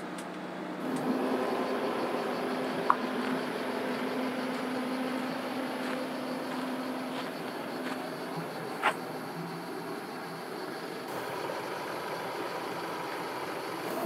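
Steady engine and road noise from inside a moving minibus, with a low hum for the first several seconds and a couple of brief clicks, then a quieter steady background noise.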